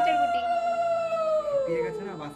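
A white puppy howling: one long, steady howl that falls in pitch near the end.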